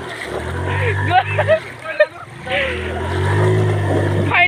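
Small motor scooter's engine revving up twice in slow swells as it is ridden and pushed through shallow river water, with short shouts from the men between.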